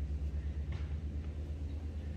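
A motor running steadily: a low hum with a fast, even pulse.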